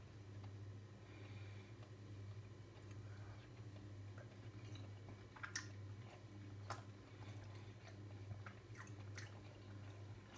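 Faint chewing of a mouthful of beef curry and rice, with a few soft clicks, the sharpest about five and a half and nearly seven seconds in, over a steady low hum.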